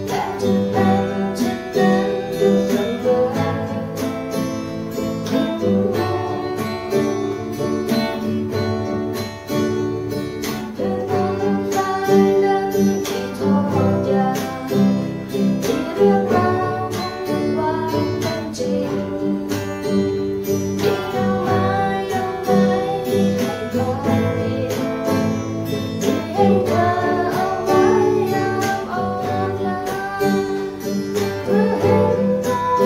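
A man singing a song in Thai while accompanying himself on an acoustic guitar, picking and strumming continuously through the passage.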